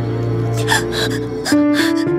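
Dramatic background score of sustained held notes, which shift to a new chord about one and a half seconds in, with a few short breathy sounds over it.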